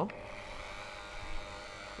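IKA Ultra-Turrax T25 rotor-stator homogenizer switched on at its starting speed, with its dispersing tip immersed in peach juice. The small high-speed motor runs with a steady, even whine.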